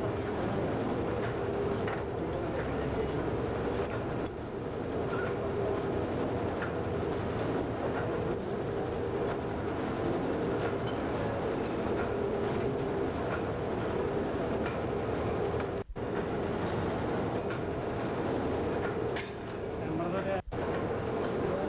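Wire nail making machine running steadily, a continuous mechanical clatter of repeating strokes. The sound drops out for a moment about three-quarters of the way through.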